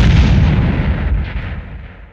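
Loud explosion sound effect, its noisy body dying away steadily and almost gone by the end.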